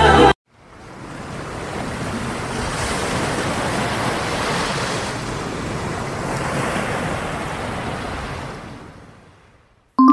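Ocean waves washing on a shore, fading in just after the start, holding steady with slow swells, and fading away over the last second or so.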